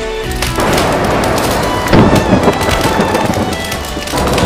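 Rain and thunder storm sound effect: a dense crackling downpour sets in about half a second in, with a loud rolling thunderclap about two seconds in, over faint music.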